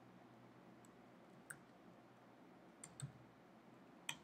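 Near silence broken by a few faint computer-keyboard key clicks: one about a second and a half in, then two close together near three seconds.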